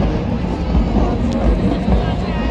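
Loud, steady stadium din, mostly a dense low rumble, with a crowd and marching band mixed in.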